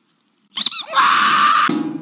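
Squeaky toy sounds: two quick high squeaks about half a second in, then a long shrill squeal. About 1.7 s in it is cut off by a sudden low tone that fades away.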